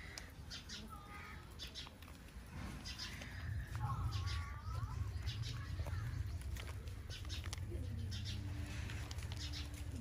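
Rabbits chewing fresh green stems and leaves: irregular crisp crunching clicks, with a few bird calls and a low rumble that comes in about halfway through.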